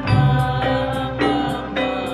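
A group of men singing a slow devotional chant together, accompanied by frame drums struck in a steady beat, a little under two strokes a second.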